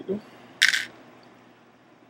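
A single brief, sharp handling noise about half a second in, from a small plastic LEGO minifig blaster being handled.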